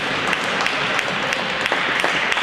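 Audience applauding, a steady patter of many separate claps.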